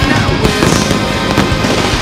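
Aerial fireworks going off, a few sharp bangs with crackling, under loud rock music.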